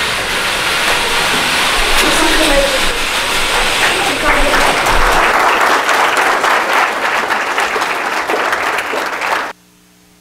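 Audience applauding, many hands clapping at once, which cuts off suddenly near the end.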